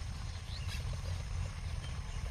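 Low, steady rumble of wind buffeting the microphone in an open field.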